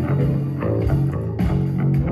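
Live rock band playing an instrumental stretch without vocals: electric guitars and electric bass through small amplifiers over a drum kit, with steady bass notes and regular drum hits.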